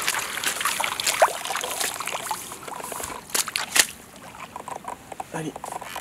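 A hooked mirror carp splashing and thrashing at the surface close to the bank as it is drawn over the landing net: irregular splashes, with two sharper ones a little past three seconds in.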